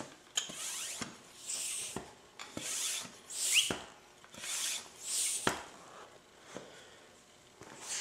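Airgun high-pressure hand pump worked in steady strokes, about one a second, each stroke a hiss with a click, pushing air into an air-over-hydraulic pressure multiplier near 6,000 psi on the hydraulic side. The strokes stop about five and a half seconds in, and one more faint stroke comes near the end.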